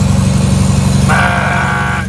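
Semi truck's diesel engine running steadily under way, heard loud from inside the cab. About halfway through, a steady high pitched tone sounds over it for about a second.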